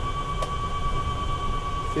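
Inside a GEM e4 electric car climbing a hill: a steady high whine from the electric drive over a low rumble of road and body noise, with one short click about half a second in.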